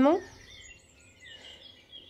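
Faint birds chirping outdoors in a lull, with the last word of a woman's speech at the very start.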